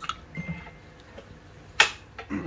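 A single sharp knock about two seconds in, much louder than anything else, over faint background.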